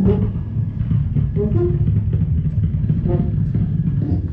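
Loud, steady low rumbling drone from a live experimental electronic set, with short trombone notes over it about a second and a half in and again about three seconds in.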